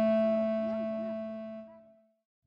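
Background music: one long held note with a full set of overtones, fading out to silence near the end.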